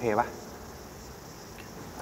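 A young man's voice from the series' dialogue ends a short Thai question at the very start, followed by a faint, steady high-pitched background hiss.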